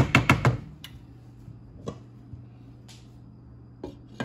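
A wooden spoon knocks sharply about five times in quick succession against the rim of a stainless steel cooking pot, then a few faint isolated clicks follow over a low steady hum.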